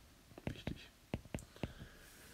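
About six light, sharp taps spread over a second and a half, a stylus tapping on a tablet's glass screen.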